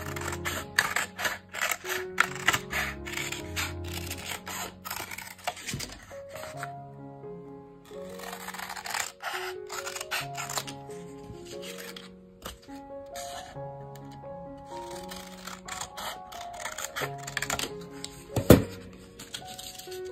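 Soft background music with repeated snips of scissors cutting through a folded paper plate, and one sharper click near the end.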